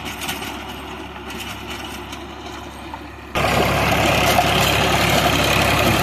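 Massey Ferguson 7250 tractor's three-cylinder diesel engine running steadily under load while it pulls a rotavator through soil. Faint and distant at first, then suddenly much louder and closer a little over three seconds in.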